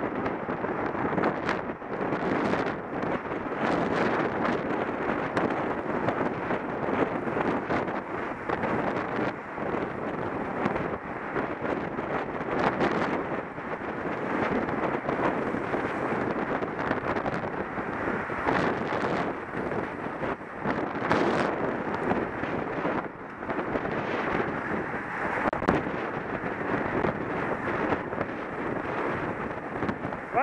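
Wind rushing over a helmet-mounted camera's microphone as a road bike moves at racing speed, steady and loud, with scattered brief clicks and knocks throughout.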